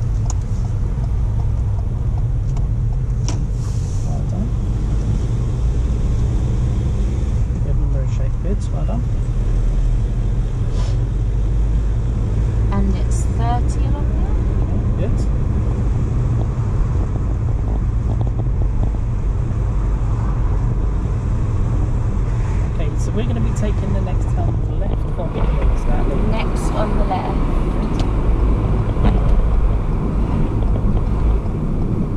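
Steady low engine and tyre rumble of a car being driven, heard from inside the cabin.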